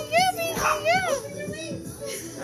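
Children cheering with high, rising-and-falling whoops, two in quick succession, with a short noisy burst between them.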